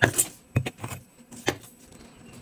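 Kinetic sand being pressed and scraped level into a small round plastic mold, with a handful of sharp clicks and taps from the plastic mold under the fingers, the last about one and a half seconds in.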